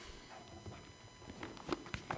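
A few faint footsteps and light knocks as a man moves away from a lectern, handling a book.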